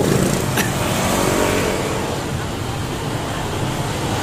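Street traffic close by: motor scooters, motorcycles and cars idling and moving off in a steady engine rumble, with one brief click about half a second in.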